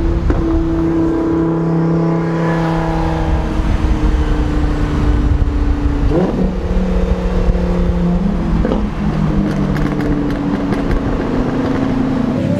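Sports car engines running at a steady cruise, mixed with wind and road rush in an open-top car. The engine pitch rises briefly about six seconds in and again near nine seconds, then settles.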